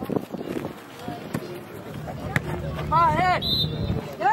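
Voices calling out across a youth soccer field over steady outdoor background noise. A loud, high yell comes about three seconds in, followed at once by a short, high whistle blast.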